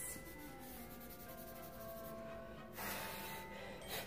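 Fingertips rubbing soft pastel into paper to blend it, a soft scratchy rub that is loudest about three seconds in, over faint background music with held notes.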